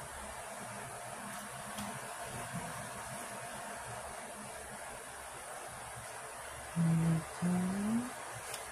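Steady low hiss with a few faint taps from handling a nail-stamping plate, scraper card and jelly stamper. Near the end a voice hums twice, like "mm, mm-hm", the second hum rising in pitch.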